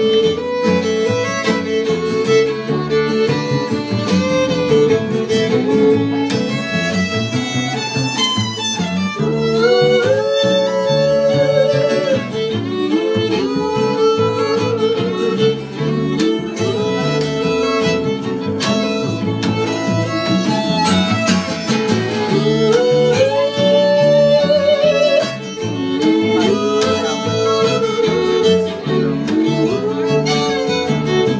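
Live acoustic string band playing: a fiddle carries the melody, sliding up into held notes several times, over a strummed acoustic guitar and an upright bass.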